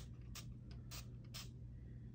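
Fine-mist pump sprayer giving three short, faint hisses of spray.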